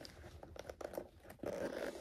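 Hands handling a zippered card binder's textured cover: faint rustling and a few soft clicks, just before the zip is opened.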